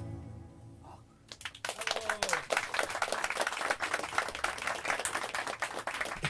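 The band's final chord fading out, then a small audience clapping from about a second and a half in, with a voice or two among the applause.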